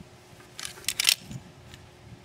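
Metal carabiner clicking and clinking against the harness's dorsal D-ring and hardware as it is being hooked on behind the back: a short cluster of sharp metallic clicks about half a second to a second in.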